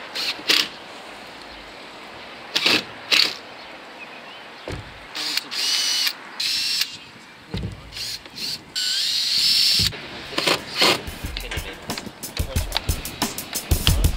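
Cordless drill driving screws into a uPVC fascia board: short whining bursts, then a whine that rises and holds for about a second, among scattered knocks of gutter parts being handled. Rapid clicking near the end.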